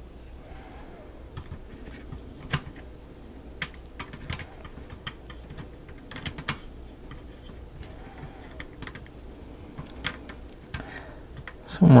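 Scattered light clicks and taps, a few seconds apart and irregular, of a thin metal hook tool knocking against the wooden parts of a plywood model mechanism while a rubber band is fished underneath a part.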